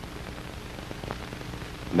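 Background noise of an old film soundtrack: a steady hiss and low hum, with a few faint clicks about a second in.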